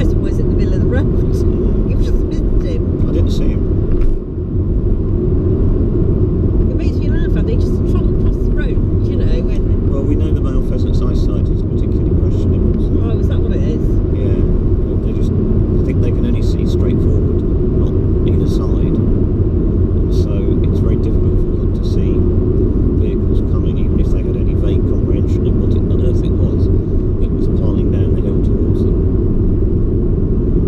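Steady road and engine rumble of a car driving at speed on an open country road, heard from inside the cabin.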